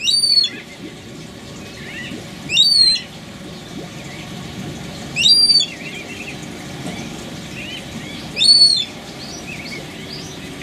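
White-fronted bee-eater calling: four loud calls of about half a second each, spaced a few seconds apart, over softer chirps of other birds.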